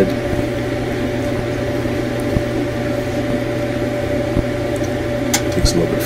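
Electrolux gas dryer's motor running steadily with a hum during a live test with the tumbler out, with a few light clicks in the second half.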